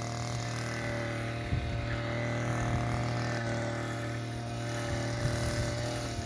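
An engine idling steadily, an even hum that holds one pitch throughout.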